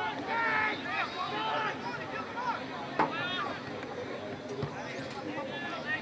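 Footballers shouting and calling out to each other across the ground, loudest in the first two seconds. One sharp thud comes about three seconds in, followed by another shout.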